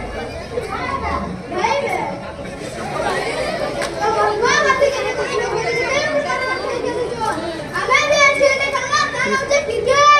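Children's voices calling out and talking over one another, with crowd chatter behind; the voices grow higher and louder near the end.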